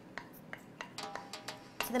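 A spoon scraping and tapping against a small glass bowl as minced ginger is scooped out: a quiet string of light clicks spread over two seconds.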